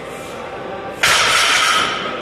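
Loaded barbell with bumper plates set down on a rubber gym floor after a deadlift: a sudden impact about a second in, followed by a rattle and clatter of the plates on the bar that lasts just under a second.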